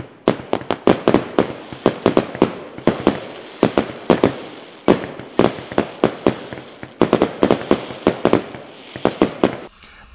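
Fireworks going off: many sharp bangs and crackles in quick, irregular succession, stopping just before the end.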